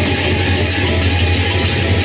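Sasak gendang beleq ensemble playing: a dense, continuous clashing of many pairs of hand cymbals over the steady low sound of the big gendang beleq drums.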